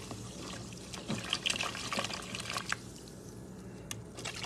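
Broccoli florets being washed by hand in a stainless steel pot of water: irregular small splashes and sloshes as the hand rubs and stirs them, easing off near the end with one sharp click.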